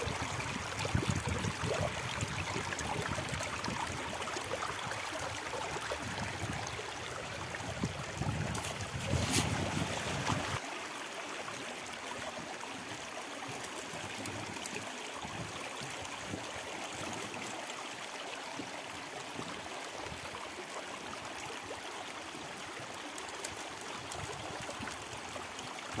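River water running through a gold-panning sluice box, a steady rush of water with a brief louder splash about nine seconds in. About ten seconds in the sound changes to a lighter, even stream flow.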